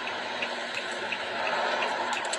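Steady rushing noise inside a car cabin, with a faint regular ticking about three times a second.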